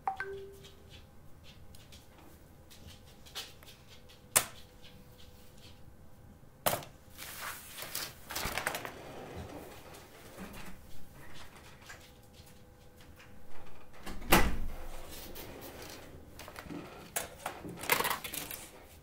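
Desk handling sounds: scattered sharp clicks and knocks as scissors and drawing tools are put down on a paper-covered drawing board, with short spells of paper rustling and sliding. The loudest knock, a dull thud, comes about two-thirds of the way through.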